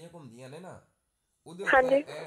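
Speech: a man talking in short phrases, a brief pause, then a louder, higher-pitched phrase near the end.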